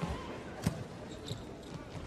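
A single sharp smack of a volleyball being struck, about two-thirds of a second in, over low arena background noise.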